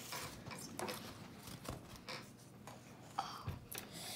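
Faint rubbing, scratching and light knocks of small objects being handled on a tabletop: a plastic plant pot and a ruler. A brief louder sound comes a little after three seconds in.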